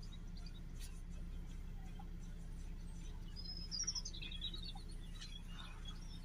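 A bird chirping, a short falling call about three and a half seconds in, over a faint steady low hum.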